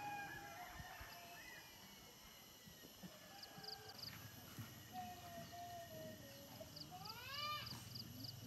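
A near-silent lull with faint, distant animal calls: a few short high chirps around the middle, and a brief call rising in pitch near the end.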